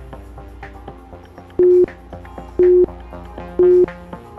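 Interval timer counting down: three short, identical beeps a second apart, the loudest sounds here, marking the last seconds of a work interval, over background music with a steady beat.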